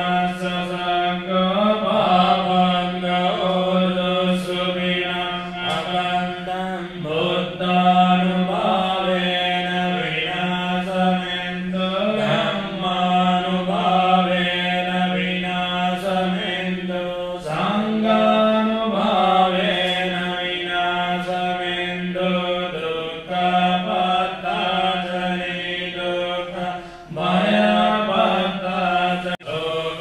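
Buddhist devotional chanting: voices reciting together in a low, nearly level tone, phrase after phrase with brief breaths between.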